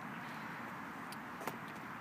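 Faint, steady outdoor background noise with no running engine, and a small click about one and a half seconds in.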